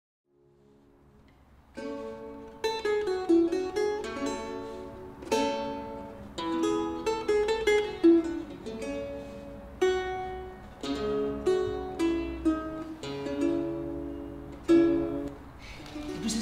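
Vihuela, a Renaissance plucked string instrument with paired strings, played solo: single notes and chords plucked one after another, each ringing and fading. It begins faintly and grows fuller about two seconds in.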